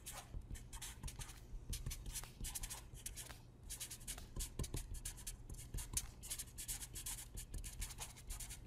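Felt-tip marker writing on paper: a quick run of short scratchy strokes as letters and symbols are written out, over a steady low hum.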